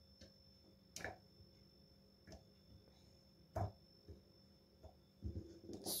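A few faint, scattered soft taps and knocks as tomato quarters are dropped into a plastic blender chopper bowl, the loudest a little past halfway.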